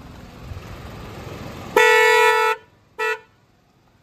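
Upgraded aftermarket horn on a Maruti Suzuki WagonR sounding: one honk of just under a second, then a short toot about half a second later.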